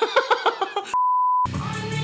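A man laughing, cut off by a single steady high-pitched bleep tone of about half a second; the music video's song comes back in right after it.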